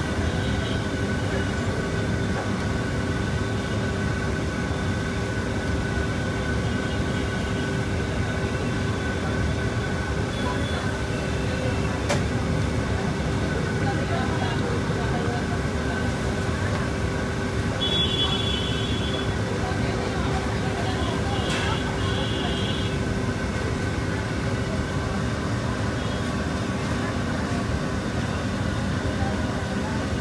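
Boondi frying in a large vat of ghee: a steady, dense sizzle and rumble with a steady hum under it, and a couple of sharp knocks midway.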